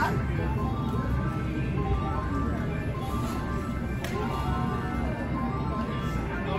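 Casino gaming-floor ambience: electronic chimes and jingle music from video poker and slot machines, many short held tones at several pitches over a steady low hum.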